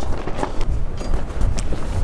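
Gusty wind buffeting the microphone, a low uneven rumble, under soft background music.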